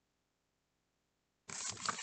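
Near silence, then about one and a half seconds in, a picture book's page is turned: dense paper rustling and crackling with small clicks from the handling.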